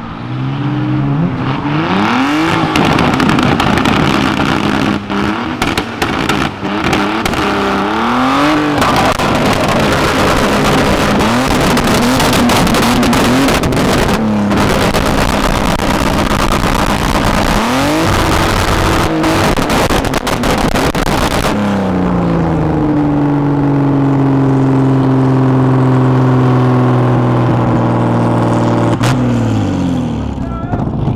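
Drift car's engine revving hard, its pitch climbing and dropping again and again, over a heavy hiss of spinning, sliding tyres. Near the end the tyre noise falls away and the engine holds high revs in one long, slowly falling note.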